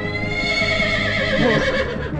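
A horse whinnying: one long call lasting nearly two seconds, falling slightly in pitch toward the end, over a low music drone.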